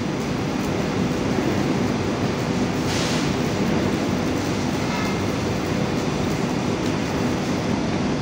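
Steady, loud rumble and hum of heavy machinery running, with a brief hiss about three seconds in.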